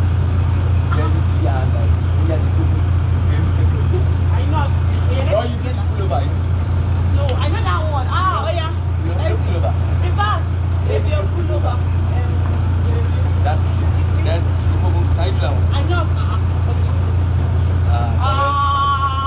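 A steady low machine hum runs throughout, with voices talking and laughing on and off over it, busiest about halfway through.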